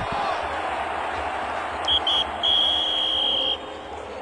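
Referee's whistle blown three times, two short toots and then a long blast, signalling full time. A background murmur of voices from the field runs under it.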